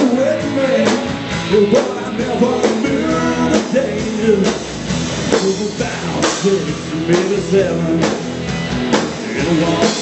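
Live rock band playing loudly: electric guitars over bass guitar and a drum kit, with steady drum hits driving the beat.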